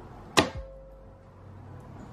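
A single sharp snap with a brief ringing twang about half a second in: the taut wire of a wooden-framed soap loaf cutter coming through a loaf of cold process soap.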